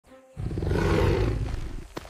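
Deep, growling animal roar sound effect for a large predator, starting about a third of a second in and fading away near the end.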